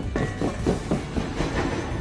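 Film sound effects of a train running on rails: clattering wheels and metallic knocks from the cars.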